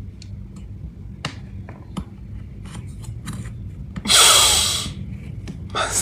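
Small clicks and rustles from a handheld phone, then a loud rush of breath about four seconds in that fades over most of a second, from a man crying.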